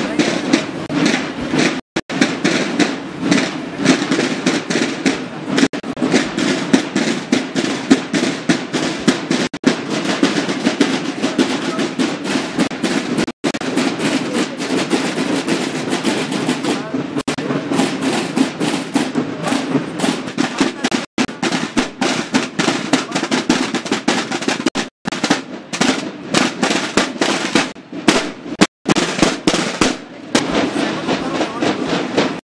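Snare drums of a marching drum-and-bugle band playing a rapid, continuous cadence, with voices mixed in.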